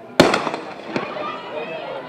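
Starting pistol fired once to start a sprint race: a single sharp crack about a fifth of a second in, dying away over a few tenths of a second.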